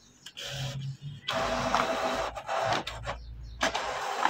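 Canon PIXMA TS5340a inkjet printer running its paper-feed motor and rollers during automatic two-sided printing. A short low hum is followed by a couple of seconds of loud mechanical whirring, which stops briefly and starts again near the end.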